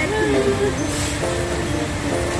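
A voice drawn out in a gliding, sing-song sound, then held steady tones, over a steady low rumble of restaurant background noise.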